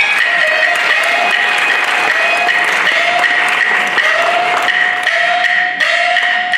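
Peking opera band playing an instrumental passage: a high bowed fiddle plays a string of short notes, each sliding up into its pitch, over sharp wooden clacks of the percussion.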